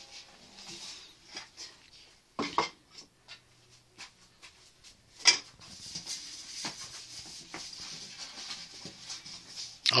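A round metal baking tray being handled by hand: scattered light knocks and clinks, a sharper clack about five seconds in, then steady dry rubbing as hands wipe around inside the tray.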